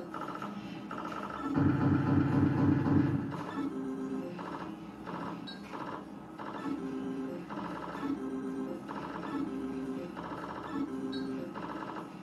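Novoline Book of Ra Fixed slot machine playing its electronic game sounds: a short chime-like phrase that repeats about once a second as the bonus wheel steps round, with a louder, fuller run of tones about two to three seconds in.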